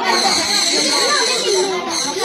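Several children and adults talking and calling out over one another, with a steady high whine running underneath.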